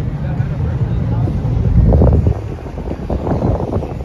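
Steady low rumble of a tour boat's engine under way on a river, with wind buffeting the microphone. It swells loudest about two seconds in, then drops back.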